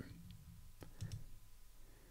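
Two faint clicks about a second in, over quiet room tone.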